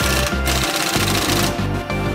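Air impact wrench hammering on a rear suspension arm nut in two bursts, the second starting about a second in, over background music with a steady beat.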